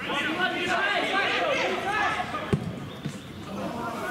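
Players shouting and calling to each other across the pitch, with a single sharp thud of a football being struck about two and a half seconds in.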